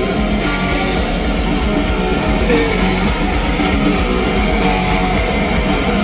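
Live rock band playing loud electric guitars in an instrumental passage with no singing.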